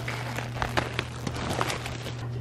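Clear plastic packaging bags crinkling and rustling in quick, irregular crackles as clothes are pulled out and handled, over a steady low hum.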